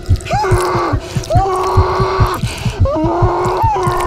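A person choking and gagging, as if being suffocated by something forced down the throat: three strained, rasping retches of about a second each, with a cough among them. Underneath is background music with a steady low beat.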